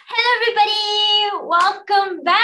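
A woman's voice in a high, drawn-out sing-song call, held for over a second before gliding down, followed by a few short syllables.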